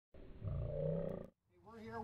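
A low, pitched roar lasting about a second that cuts off abruptly, then after a short silence a man's voice begins.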